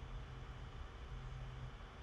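Low steady background hiss with a faint hum, the room noise of open microphones on a video call.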